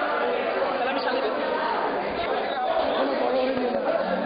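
Many people talking at once in a large hall: a steady hubbub of overlapping voices.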